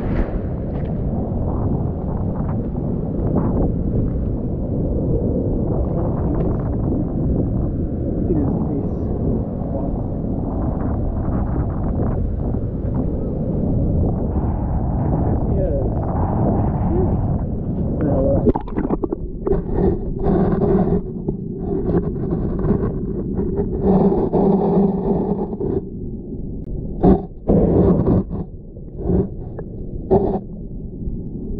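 Wind buffeting the camera microphone over surf breaking on a rock shelf, a dense rumble for the first two-thirds. In the last third the rumble drops away, and steady pitched notes, each held a second or two, come and go.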